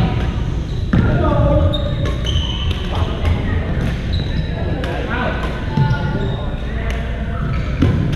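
Badminton rackets striking a shuttlecock in a rally, sharp clicks every second or so, with sneakers squeaking on the gym floor. Voices from other courts echo throughout the large hall.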